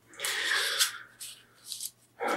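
Paper and card rustling as the pages of a read-along book are turned and a 7-inch vinyl record is slid across them, followed by two brief, softer rustles near the end.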